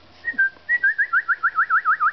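A person whistling a high, clear note: a few short gliding notes, then a fast warbling trill of about seven wavers a second through the second half.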